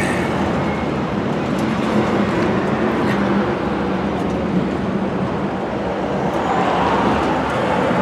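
Steady motor-vehicle noise: an even low hum with hiss that holds at the same level throughout.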